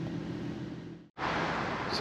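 Steady road noise and low hum inside a moving car's cabin, fading out about a second in; after a brief gap, a louder steady hiss follows.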